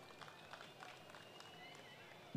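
Near silence: a pause in a man's speech over a microphone, with only faint scattered ticks in the background.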